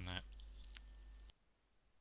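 Faint clicks of a headset cable and plug being handled over a low mains hum, which cuts off suddenly about a second and a half in, leaving near silence: the headset microphone being disconnected.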